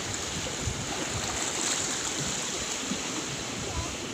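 Steady wash of small waves and sea noise.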